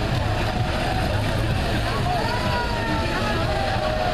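Old Mercedes-Benz cab-over truck's engine running with a steady low rumble as it creeps along at walking pace, with crowd voices over it.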